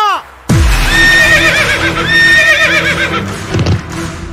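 A horse whinnying twice, about a second in and again about two seconds in: each call starts on a held high note and breaks into a quavering trill. A heavy low boom comes just before the first whinny.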